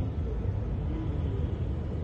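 Steady low rumble of outdoor ambience, with a faint wavering sound in the middle of the range.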